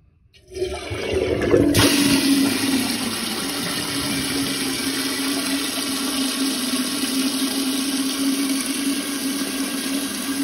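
Toilet tank flushing with the lid off: water rushes through the flapper valve, starting about half a second in. A sharper hiss joins near two seconds in, and a steady low hum runs under the rushing water.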